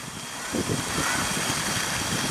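Wind buffeting the microphone: an even hiss with irregular low gusty rumbles that build from about half a second in.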